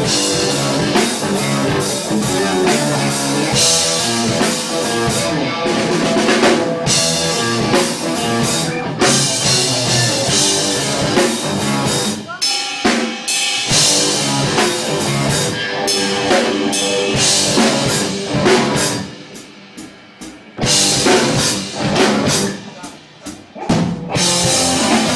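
Live rock band playing electric guitar, bass guitar and drum kit, with the drums to the fore. Near the end the band drops out in short breaks, marked by sharp hits, before coming back in.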